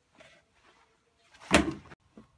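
A single sudden loud thump about one and a half seconds in, dying away quickly, with faint shuffling before it.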